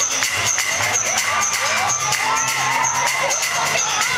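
Electro house dance music played loud over a club sound system, with a steady beat about two strokes a second and crisp repeating hi-hats, and crowd voices shouting and cheering over it.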